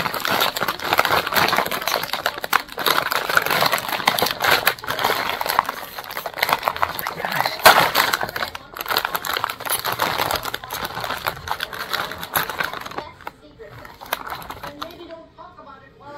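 Clear plastic snack bag crinkling and crackling as it is pulled open by hand, a dense run of sharp crackles that dies away about three seconds before the end.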